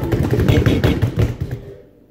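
Several people slapping their hands rapidly on a countertop in a fast drumroll, which stops about a second and a half in.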